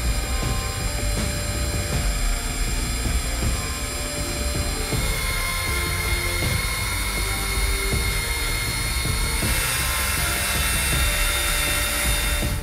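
Electric drill running steadily, spinning a ring on a mandrel against wet Micro-Mesh sanding pads held in the hand: a steady motor whine with a sanding hiss that grows louder toward the end.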